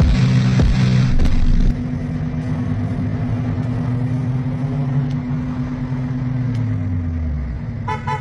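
A car's deep, steady tone, held for about seven seconds and sinking in pitch near the end. It is louder and fuller for the first couple of seconds.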